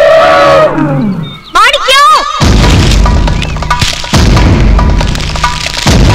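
Elephants trumpeting: a long, steady call, then a short call that swoops up and down. About two and a half seconds in, loud film music with heavy booming drums takes over.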